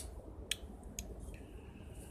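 Handling noise: a sharp click as a hand touches the phone, then two lighter clicks about half a second apart. A faint thin steady high whine sets in about halfway through.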